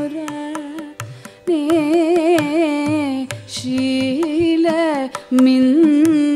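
Female voice singing a Carnatic melody with sliding, ornamented notes, accompanied by regular mridangam strokes over a steady drone. The voice breaks off briefly about a second in and again around three and five seconds.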